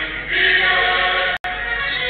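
A small group of schoolgirls singing a national anthem together into a microphone. The sound cuts out for an instant about one and a half seconds in.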